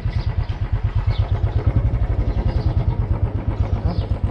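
Motorcycle engine running at low speed as the bike rolls slowly, a steady low throb of rapid, even pulses.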